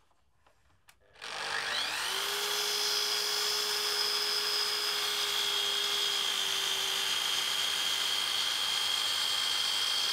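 Electric mitre saw starting about a second in, its motor rising to speed within a second and then running at a steady pitch.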